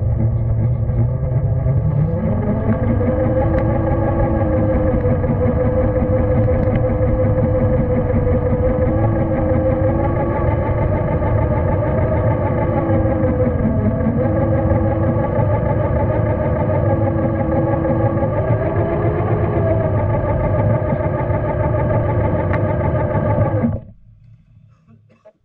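Radio-controlled scale crawler driving through snow. A steady, loud, engine-like drone rises in pitch about two seconds in and then wavers up and down with the throttle. It cuts off suddenly just before the end.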